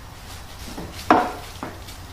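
Wooden birdhouse-kit pieces knocking against a wooden workbench: one sharp knock about a second in, then a lighter one about half a second later.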